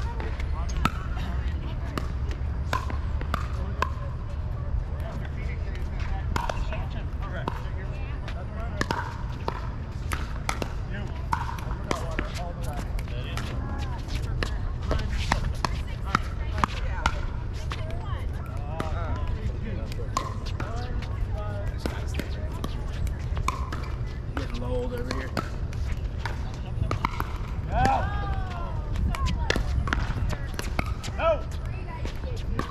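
Pickleball paddles hitting a plastic pickleball during doubles rallies: a long run of short, sharp pops scattered throughout, over a steady low rumble.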